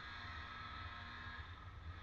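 Steady low rumble of a boat trailer being towed slowly along a road, picked up by a camera riding in the boat.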